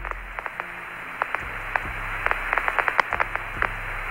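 Radio static on the Apollo air-to-ground voice link between transmissions: a steady, band-limited hiss full of crackles and clicks over a low hum. It is the noise of a weak or dropping signal, taken for the link breaking lock.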